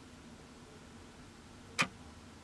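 Quiet room tone with one short, sharp click near the end.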